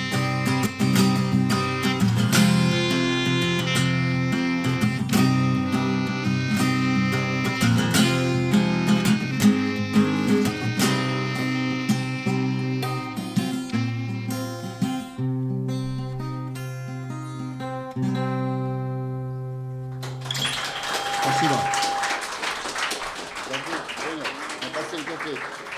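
Acoustic guitar strumming chords under a clarinet holding long melody notes, an instrumental passage of a live acoustic song. The music stops about 20 seconds in and gives way to voices and room noise.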